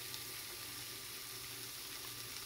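Shrimp frying in oil in a nonstick pan, giving a faint, steady sizzle.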